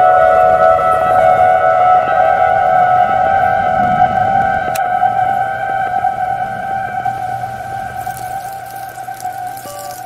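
Music: a sustained chord of steady held tones, slowly fading toward the end.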